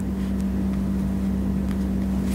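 A steady low hum with a deeper rumble beneath it, and a couple of faint soft touches of tarot cards being handled on a cloth.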